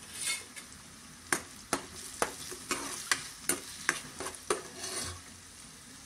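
Steel spoon stirring chopped onions frying in oil in a metal pot, knocking and scraping against the pan about ten times from about a second in, over a soft sizzle.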